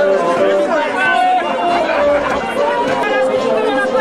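Crowd chatter: many people talking at once, with music playing underneath.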